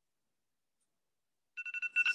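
Silence, then about one and a half seconds in a countdown timer alarm goes off: a rapid string of short electronic beeps, signalling that the 20-second drawing time is up.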